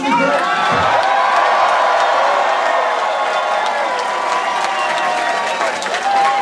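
Large crowd cheering and applauding, with shouts and whoops. It breaks out at once and stays loud and steady.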